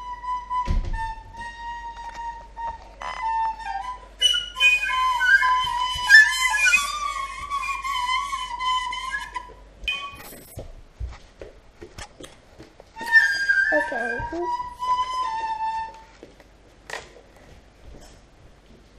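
High, flute-like piping notes, held and sliding in pitch, in two stretches with a gap of a few seconds between them. There is a sharp knock about a second in.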